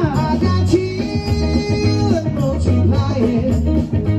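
Live band music: guitar over a deep, repeating bass line.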